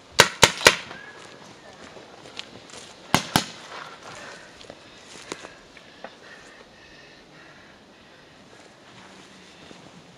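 Paintball marker firing: a rapid burst of three shots, then two more shots about three seconds later, with a few fainter pops after.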